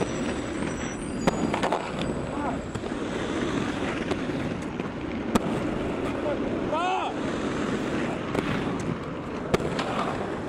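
Inline skate wheels rolling on concrete pavement with a steady rumble, broken by several sharp clacks of the skates striking the ground or ledge, the clearest about a second in, midway and near the end. A short warbling squeal sounds about seven seconds in.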